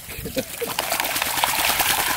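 Lake water splashing and sloshing as a dog swims after jumping in, heard as a steady wash of water noise, with faint voices.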